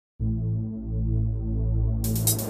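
Silence, then a moment in a Yamaha arranger keyboard style's intro starts: deep sustained bass and low synth chords with a slow throb, the chord notes shifting above a steady low drone.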